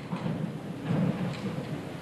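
Audience applauding in a concert hall, a dense irregular clatter with a boomy low end.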